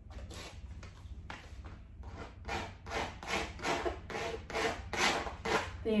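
Paint being rubbed onto a heavily textured canvas: a run of short, scratchy strokes, about two a second, in the second half after a few scattered ones.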